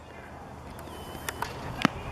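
Quiet open-air softball field background, with a couple of faint clicks and one sharp knock near the end as a pitch comes in to the batter.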